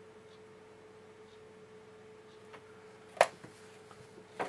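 Quiet room tone with a faint steady hum, broken about three seconds in by one sharp click.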